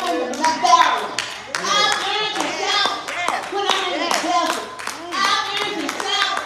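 Church worship shouting: raised voices calling out in praise over repeated hand clapping.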